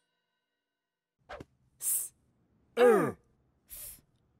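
Short vocal sounds from cartoon letter characters: a brief hiss, then one loud voiced sound falling steeply in pitch about three seconds in, and a faint short noise near the end.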